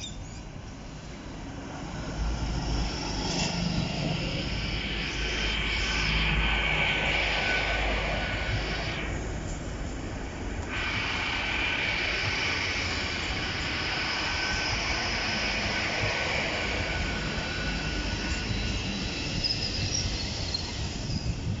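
Hitachi Class 800 Azuma bi-mode train passing close at low speed on diesel power: the steady rumble of its underfloor engines and wheels on the rails, with a steady high whine above it. The rumble builds about two seconds in as the train reaches the crossing.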